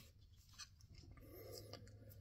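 Near silence, with a couple of faint clicks from a plastic action figure being handled, once about half a second in and again near the end.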